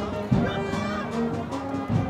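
Agrupación musical band of cornets, trumpets, trombones and drums playing a Holy Week procession march. Brass notes are held over drum strokes.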